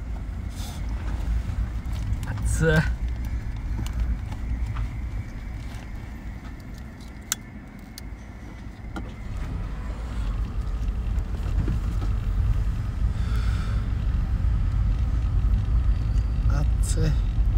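Low, steady rumble of a car's engine and road noise heard from inside the cabin, growing louder about ten seconds in.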